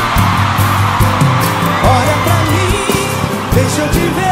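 Live pagode band playing in a stadium, with a steady bass and drum beat under a sung melody, and the crowd cheering over the music near the start.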